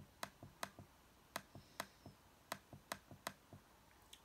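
Faint, quick, irregular clicks, roughly four or five a second, from a laptop's pointer controls being worked while a web page is scrolled.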